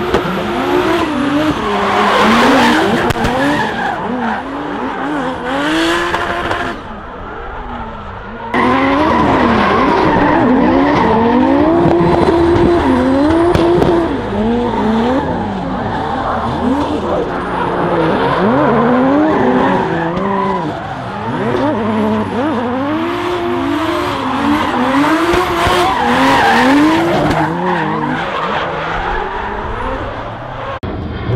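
Two drift cars battling in tandem, engines revving up and down over and over as the drivers work the throttle, with tyres screeching as they slide sideways. The sound dips briefly about seven seconds in, then picks up again.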